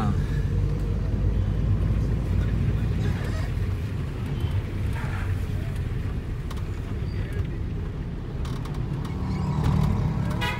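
Steady low rumble of street traffic, with auto-rickshaw and motorbike engines running, and faint voices of passers-by heard now and then.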